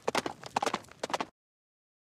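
A quick, irregular series of sharp knocks or clicks, about four or five a second, that cuts off suddenly a little over a second in.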